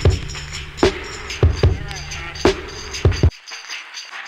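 A sample-based hip-hop beat played back from an Elektron Octatrack MKII: a chopped drum break of kicks and snares over a looped sample with a steady bass line. It cuts off suddenly a little over three seconds in.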